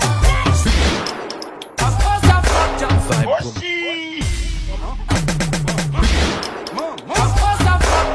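DJ-mixed dance music with a transition: a sweeping noise effect fades out about a second in, the beat returns, then the music drops away briefly with a rising effect about three and a half seconds in before the next track comes in with a heavy bass line just after four seconds.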